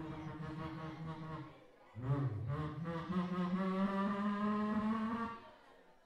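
A man beatboxing into a hand-held microphone cupped to his mouth: a fast stuttering run of low voiced sounds, then after a brief pause a long held low note that rises slightly in pitch and stops about five seconds in.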